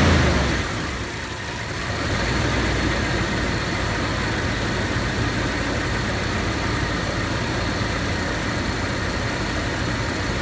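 Vehicle engine running steadily at idle, after a louder surge right at the start.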